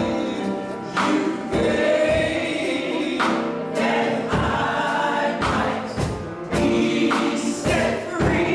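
A mixed church choir of men and women singing a gospel song, with drum strikes through it.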